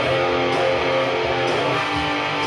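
Rock band music without singing: guitar chords held and ringing steadily.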